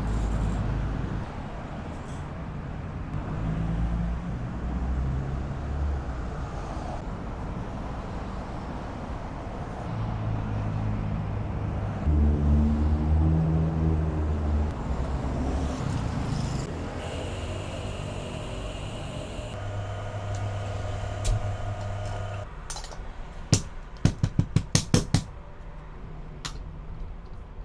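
Low rumble of road traffic that swells and fades. Near the end comes a quick run of about eight sharp metallic taps as the espresso portafilter and its tools are knocked during dose preparation.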